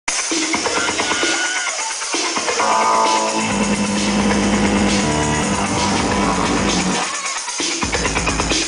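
Electronic dance music from a DJ set, played loud over a club sound system. It is dense and steady, with a low held bass note from about three and a half seconds in until about seven seconds.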